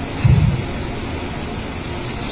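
Steady room noise, an even hiss, in a pause between words, with one short low sound about a quarter second in.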